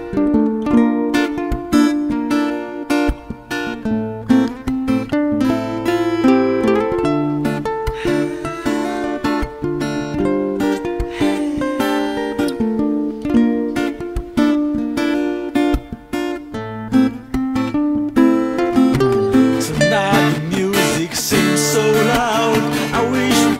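Acoustic guitar picking out an instrumental melody in a run of separate notes, with a wavering higher line joining in near the end.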